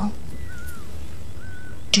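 Steady low background hum with no speech. Two faint thin high tones sound over it: one bends downward about a third of the way in, and a short flat one comes near the end.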